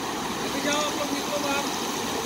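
Crawler crane's engine running steadily while it hoists a loaded clamshell grab, with people's voices in the background.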